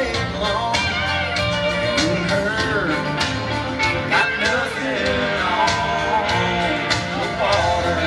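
Live country band playing an amplified song in an arena, heard from the audience. A steady bass and beat run under a melodic line that bends up and down in pitch.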